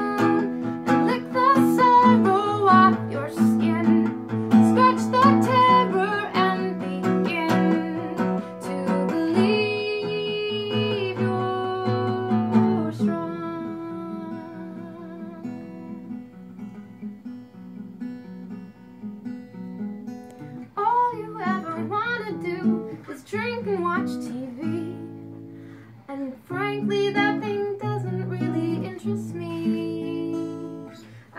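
Selmer-style gypsy jazz acoustic guitar played, with a woman singing over it. The playing thins to softer held notes about halfway through, then picks up again.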